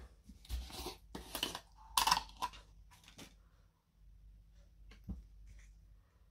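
Short scattered rustles and knocks of hands at work on a craft table: a plastic Mod Podge jar being opened and set down, and cardstock hinge strips being handled. Most of the sounds fall in the first three seconds, with one small tap near the end.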